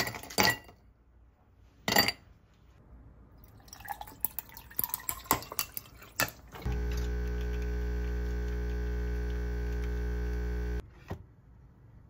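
Ice cubes clinking and rattling into a glass. Then a coffee machine's pump hums steadily for about four seconds and cuts off, with a click just after.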